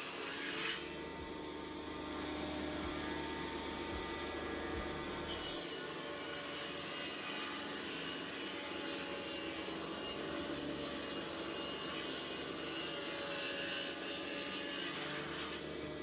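Electric combination wood planer and thicknesser running with a steady hum as a plank is fed across its cutter bed.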